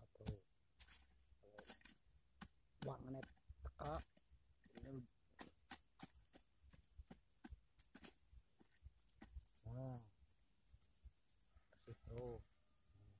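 A small hand hoe chopping and scraping into loose, crumbly soil and grass roots: faint, irregular short clicks and scrapes, stroke after stroke.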